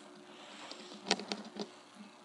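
Faint room tone in a pause in speech: a low steady hum with a few short, soft clicks about a second in.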